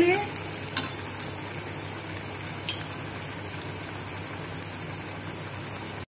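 A shredded-potato tikki frying in hot oil in a steel kadai over a low gas flame: a steady sizzle and bubbling, with a couple of faint clicks.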